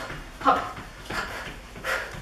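A woman's short, breathy 'hop' calls and exhales, a few times about a second apart, as she does fast mountain climbers.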